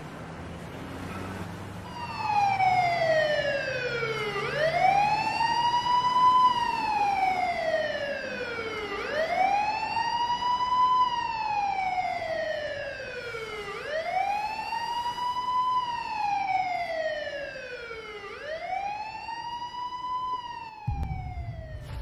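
Emergency-vehicle siren wailing: its pitch rises quickly and falls slowly, about one cycle every four and a half seconds, coming in about two seconds in. A deep low rumble comes in near the end.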